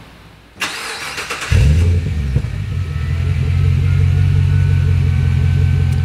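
A GM 6.2-litre LS3 V8 being started: the starter cranks for about a second, the engine catches about a second and a half in with a loud flare, then settles into a steady, low idle.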